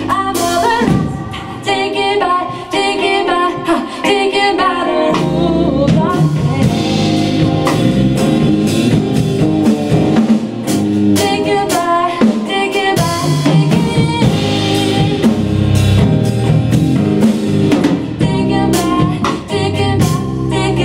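Live band playing: bass guitar, guitar and drum kit, with singing over it. Drum hits run through the whole passage, thicker in the second half.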